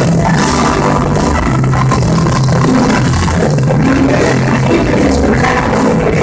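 A live rock band playing loudly: electric guitars, bass guitar and drum kit together in a steady full-band groove, with bass notes shifting about once a second.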